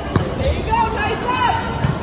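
A volleyball struck sharply by a player's arms or hands just after the start, with a second, lighter hit near the end as the rally goes on.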